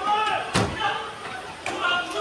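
One sharp, loud bang about half a second in, with a fainter click near the end, among people's voices.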